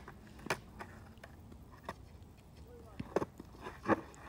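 A skateboard on a hard court surface giving a few sharp knocks as the board is popped up and caught during a freestyle trick. There is one light knock about half a second in, and two louder ones near the end.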